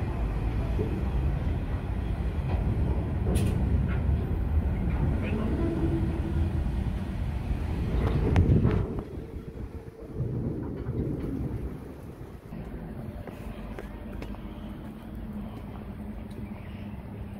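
Freight train hopper wagons rolling past close by, a steady rumble of wheels on the rails. It is loud for the first nine seconds, then drops off sharply and carries on as a quieter rumble.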